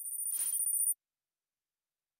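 Short electronic sound effect from the Kahoot! quiz game: two very high, steady tones that grow slightly louder for about a second and then cut off suddenly.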